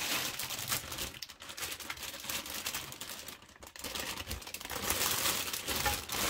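Clear plastic bag holding the figure's parts crinkling as it is handled, in a steady run of crackles with a short lull midway and louder toward the end.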